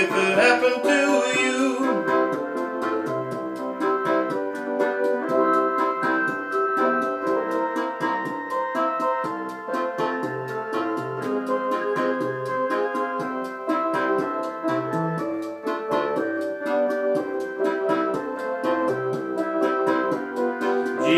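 Suzuki Omnichord OM-84 playing an instrumental passage: held organ-like chords over its built-in rhythm accompaniment, with a bass line and steady, evenly spaced ticking percussion.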